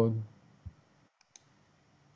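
Two faint, quick computer mouse clicks a little over a second in, preceded by a small knock, as the Slide Show button is pressed to start a PowerPoint slideshow.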